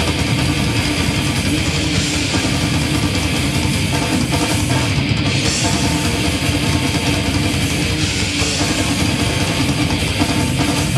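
Heavy metal band playing live: distorted electric guitars, bass and drums, loud and dense with no break.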